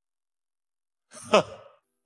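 About a second in, a man's voice gives one short, breathy, falling-pitched exhaled laugh, the opening of a laugh, heard as an isolated vocal with no backing music.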